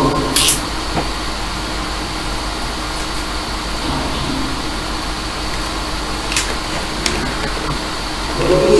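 Afterlight Box ghost-box software putting out steady static hiss, with faint chopped snatches of sound drifting in and a brief sharper hiss about six seconds in.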